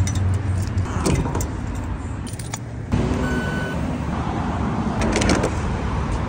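Keys jangling and metal clicks as a key unlocks and removes the fuel filler cap of a classic Mercedes, with the low hum of a vehicle in the background, strongest in the first second. A short electronic beep sounds about halfway through.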